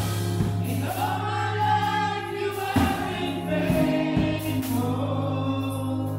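Several women singing a gospel song together into microphones, holding long notes over a steady accompaniment with bass and occasional drum strokes.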